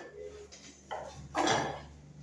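Kitchen knife cutting green peppers on a wooden cutting board: a few short, sharp chops, the loudest about a second and a half in, over a faint steady low hum.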